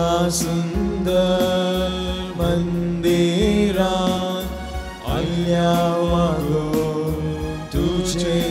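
A hymn sung with instrumental accompaniment: long held, gliding sung notes over steady low chords.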